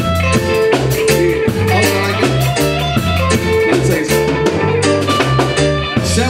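Live band playing: electric guitar, Yamaha MO6 keyboard, bass line and drum kit on a steady, even beat.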